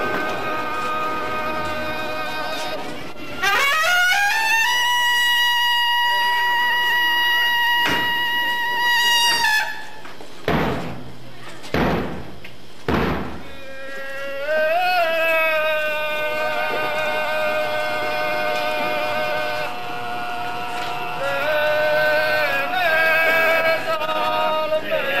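Procession music: a brass instrument sounds one long held note that slides up into pitch and holds for about six seconds. Then three loud thumps come about a second apart, and a slow, wavering melodic line with pitch bends runs to the end.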